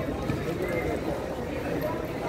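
Pedestrian street ambience: voices of passers-by talking, with a clatter of footsteps on the paving.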